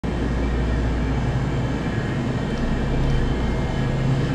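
Steady low mechanical hum of a grocery store's background noise, with no break or change.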